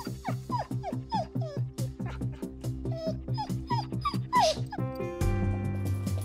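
Pit bull shut in a hospital kennel whining in a quick run of about a dozen short cries, each falling in pitch; the cries stop about four and a half seconds in. The whining is a sign of her excitement at being confined with the vet at the door. Background music with a steady beat plays throughout.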